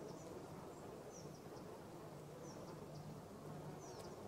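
Faint recorded nature ambience: a low steady insect-like buzz with short, high, falling chirps every second or so.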